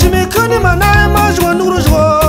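A song with a sung vocal melody over a steady drum beat and heavy bass.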